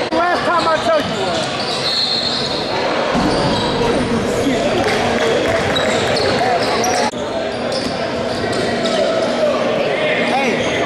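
Basketball bouncing on a hardwood gym floor amid voices chattering in a large, echoing hall, with a few quick squeaks of sneakers on the court in the first second.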